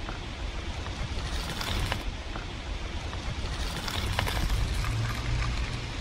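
StadtRAD Hamburg rental bicycle setting off and rolling over a gravel path. Its tyres give a steady crunching hiss, broken by a few short clicks, over a low rumble.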